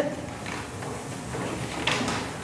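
Children wiping chalk off their slates with cloths: a soft, continuous scrubbing and rustling from many slates at once, with a light knock near the end.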